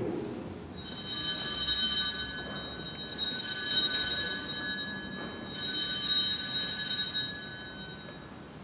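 Altar bells (a set of sanctus bells) shaken three times, each a bright high jingling peal of about a second and a half to two seconds. They are the signal of the elevation at the consecration.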